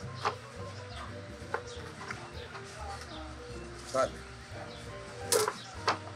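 Chef's knife slicing grilled ribeye on a plastic cutting board, the blade knocking on the board a few times, over background music.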